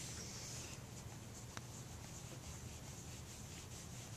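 Faint, repeated rubbing strokes as a struggling newborn puppy is rubbed to get it breathing, with one small click about a second and a half in. A low steady hum runs underneath.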